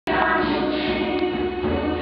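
Children's choir singing, many voices blended on held notes.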